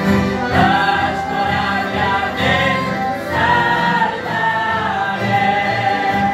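A mixed family choir of men, women and children singing a hymn together, accompanied by piano accordions. The voices come in just after the start over the accordion chords and carry on in long held notes.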